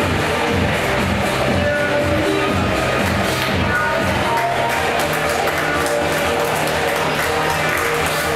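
Music with a steady bass line and held notes. A quick, high ticking beat joins about halfway through.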